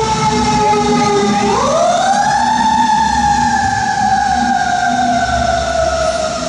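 An emergency vehicle's siren wailing loudly. Its tone falls slowly, swoops up sharply about a second and a half in, then slowly falls again.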